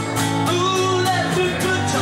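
Live rock and roll band music: a guitar played to a steady beat, with a singing voice.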